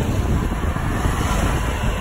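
Wind buffeting the microphone of a camera carried on a moving bicycle: a steady, loud rushing rumble.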